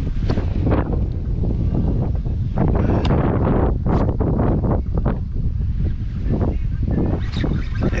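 Wind buffeting the camera microphone: a loud, continuous low rumble with irregular gusts.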